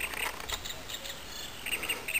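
Faint background chirping: short chirps coming a few at a time throughout.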